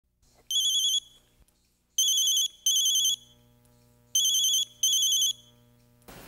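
Mobile phone ringing with a warbling electronic ring in short bursts of about half a second: one ring, then two pairs of rings.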